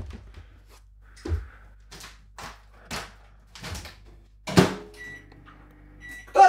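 Several soft knocks and clunks, then a louder clunk about four and a half seconds in, followed by a microwave oven's low steady hum and a short high beep.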